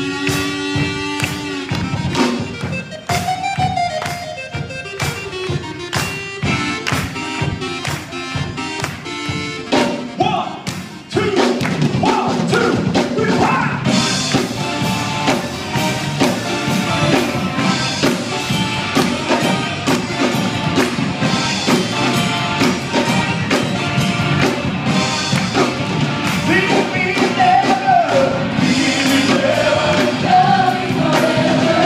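Live band with keyboard and electric guitar playing a worship song, with a group singing along. About eleven seconds in, the music steps up suddenly to a louder, fuller sound.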